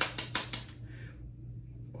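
Makeup brush brushed quickly against the contour powder in a compact palette: about four short scratchy strokes in the first second.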